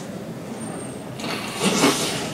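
Low room hum of a lecture room, then, about a second in, a swelling rush of noise on a handheld microphone that peaks near the end and falls away.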